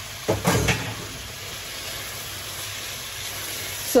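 Salt fish and vegetables sizzling steadily in a frying pan, with a brief clatter about half a second in.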